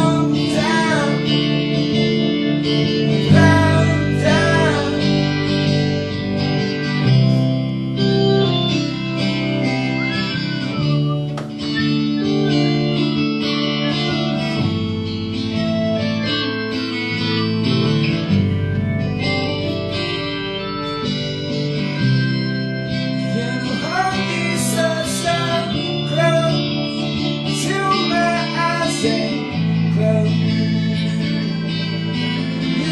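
A live band playing a song: guitar chords under a singing voice that comes in at several points, at a steady level with no breaks.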